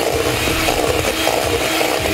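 Electric hand mixer running steadily, its beaters churning a thick cheesecake filling and scraping against the stainless steel bowl.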